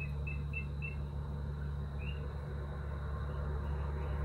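A steady low hum of room noise, with a quick run of four faint high chirps at the start and a single chirp about two seconds in.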